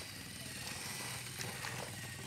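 Small electric motors of a LEGO Mindstorms tracked robot running, a steady faint whine over classroom room noise.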